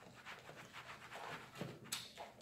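Faint scraping and clicking of forks and a knife against plastic takeout salad containers, with one sharper click near the end.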